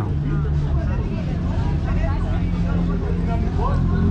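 Steady low hum of road traffic on a busy street, with faint background voices over it.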